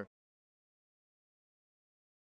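Dead silence: the sound track drops out completely, with no crowd or gym noise, just after the tail of a commentator's word at the very start.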